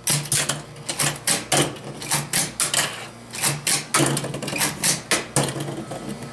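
Hot Wheels Ballistiks Super 6-Shooter, a hand-held plastic toy launcher, being fired: a quick, irregular run of sharp plastic clicks and clacks as the ball-shaped cars shoot out and knock onto the table.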